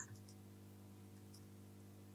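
Near silence with a low, steady electrical hum, and one or two faint clicks of computer input right at the start as code text is selected.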